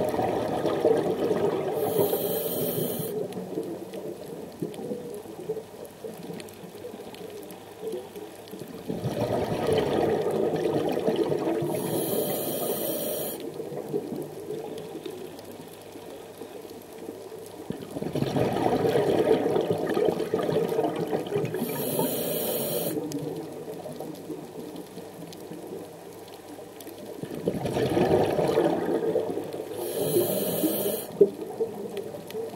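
Scuba diver breathing through a regulator underwater: four rounds of exhaled bubbles about every nine seconds, each ending in a short high hiss.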